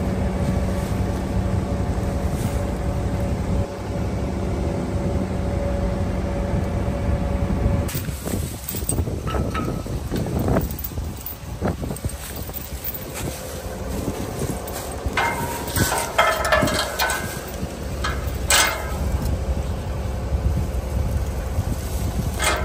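A JLG telehandler's diesel engine running steadily for the first several seconds. After that, gusty wind buffets the microphone, with scattered sharp metal clinks and knocks from hand work at a muddy centre-pivot tower wheel.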